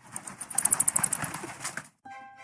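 Cartoon sound effect of a bat swooping in: a rapid flutter of wing flaps, about ten a second, loudest in the middle and stopping suddenly near the end.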